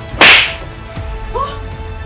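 A single sharp slap, a hand striking a face, about a quarter second in, over steady background music.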